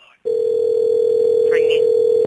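Steady telephone line tone lasting about two seconds, the ringing tone of a phone call ringing through.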